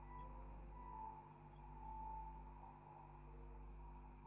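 Near silence: a faint steady low electrical hum, with a few faint brief higher tones.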